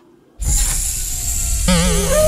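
Film soundtrack: a deep rumble with hiss starts suddenly about half a second in, and a wavering held musical tone comes in near the end.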